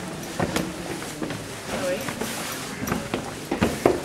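Irregular footsteps and knocks of people walking down a stair, with faint voices murmuring in the background.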